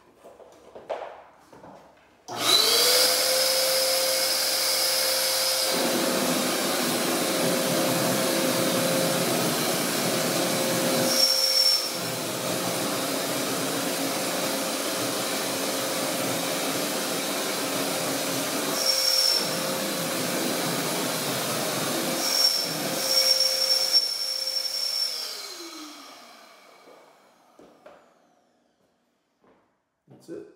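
Electric blower of a Wagner Power Tex hopper-gun texture sprayer switching on abruptly about two seconds in and running steadily with a whine and rush of air as it blows drywall texture mud onto the wall, with a few brief dips. Near the end it is switched off and winds down with falling pitch.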